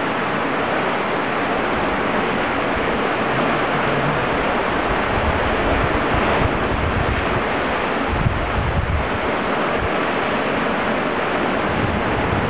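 Steady rush of wind and surf, with wind buffeting the microphone in low gusts about two-thirds of the way in.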